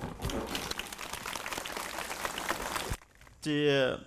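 Audience applauding: a dense, even patter of claps that cuts off suddenly about three seconds in.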